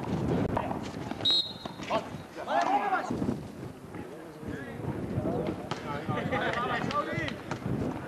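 Players' voices calling and shouting across an outdoor basketball court, with a short high referee's whistle about a second in that stops play, and scattered sharp knocks.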